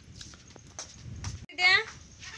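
A few faint clicks and knocks, then one short, high-pitched animal call about one and a half seconds in, the loudest sound here.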